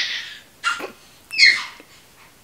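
A baby's brief high-pitched squeal about a second and a half in, falling slightly in pitch, with a shorter sound about half a second before it.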